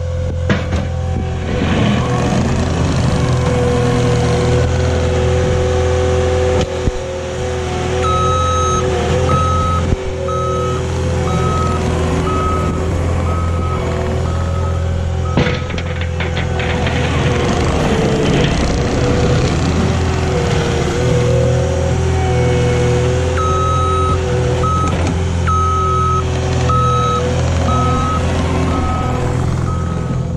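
Cat compact track loader's diesel engine running under load as it pushes snow with a plow blade, its revs rising and falling. Its reversing alarm beeps about one and a half times a second during two spells, about eight seconds in and again from about twenty-three seconds until near the end. There is a brief clatter about halfway through.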